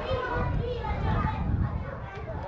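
Indistinct chatter of several voices talking at once, children's voices among them, over a low rumble.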